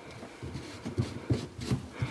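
Faint, scattered plastic knocks and creaks from a white PVC sink P-trap as its slip nuts are turned and handled by hand.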